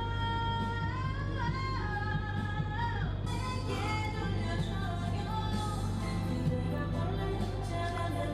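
A woman singing over a karaoke backing track, holding long notes.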